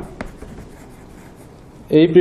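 Chalk writing on a blackboard: a sharp tap as the chalk meets the board just after the start, then soft scratching strokes as a word is written.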